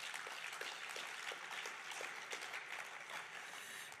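Audience applauding, a fairly faint, steady patter of clapping.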